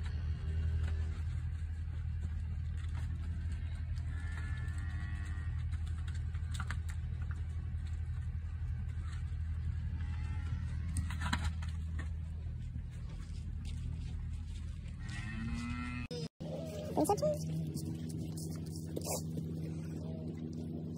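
Holstein dairy cows mooing several times, short separate calls, over a steady low machine drone. About four seconds before the end the drone briefly cuts out and carries on at a higher pitch.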